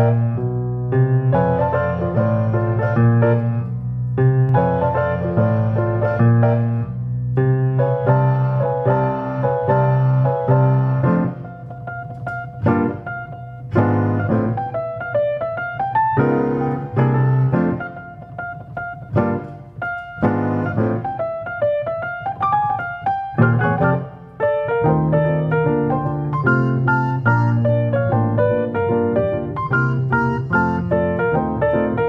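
Young Chang G150 grand piano playing itself under a QRS player system, keys moving with no hands on them. It plays a tune over a full, steady bass figure, thins to a lighter passage about halfway through, then fills out again near the end.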